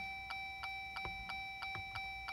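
Faint, regular ticking, about two to three ticks a second, over a thin steady high whine, inside a parked Jeep's cabin with the ignition on.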